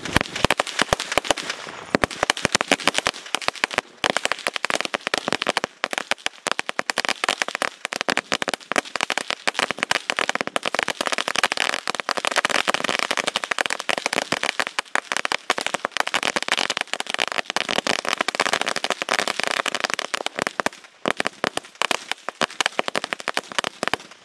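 An Angel Fireworks 1000-wala firecracker string going off as a rapid, continuous chain of sharp bangs, cutting off suddenly at the very end.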